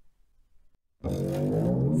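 Near silence, then about halfway through a low, dense dramatic sound effect sets in: a deep tone with many overtones, sliding slightly downward.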